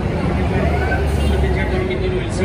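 A bus engine running with a low rumble, amid the chatter of a large crowd.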